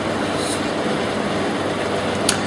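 Steady background noise: an even hiss with a faint low hum underneath, unchanging throughout.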